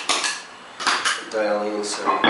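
Electric guitar, a Gibson '57 Les Paul Junior reissue, handled between passages through the amp: a sharp click at the start, a few clanky knocks about a second in, and short string notes ringing briefly just before the end.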